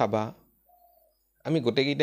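A person speaking in short phrases, with a pause of about a second in which a faint, brief wavering tone is heard.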